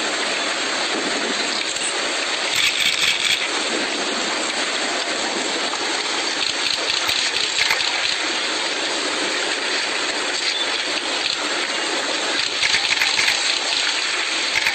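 A steady rushing, hissing noise, the field sound of sea-ice footage, with louder crackling about three seconds in and again near the end.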